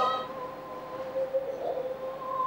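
A single long, steady note from the Kunqu opera performance, held at an even pitch with a slight waver about a second and a half in.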